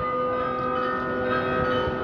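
Bells of Munich's town-hall glockenspiel ringing, several pitches sounding together and held as a sustained chord.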